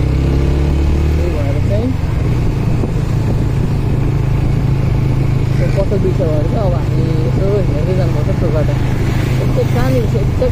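Motorcycle engine running steadily under way at moderate city speed, its low note changing about a second and a half in.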